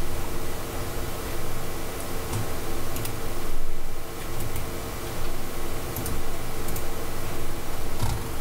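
Steady background hiss with a faint hum, broken by a few faint clicks of a computer mouse as text is pasted.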